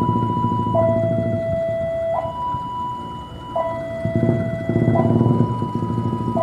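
A KAI diesel-electric locomotive rumbles slowly in on a passenger train. Over it, an electronic two-tone warning alternates steadily between a lower and a higher tone, switching about every one and a half seconds.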